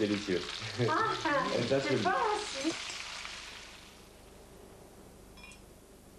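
A pork joint sizzling as it is sealed in a pan of hot oil and butter. The sizzle fades away about halfway through.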